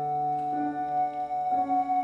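EyeHarp, a gaze-controlled digital music instrument, playing sustained synthesized notes: a high note is held while the lower notes change about half a second in and again about a second and a half in.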